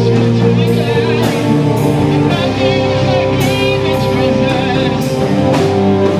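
Live rock band playing with no words sung: electric guitar, bass guitar and keyboard holding sustained notes over a drum kit, with regular cymbal hits.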